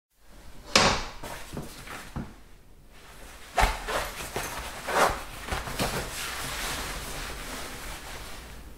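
Bathroom foley: fixtures being handled, a run of knocks, clicks and bangs, the loudest a little under a second in, near four seconds and at five seconds. A steady hiss of a urine stream sets in over the last two seconds or so.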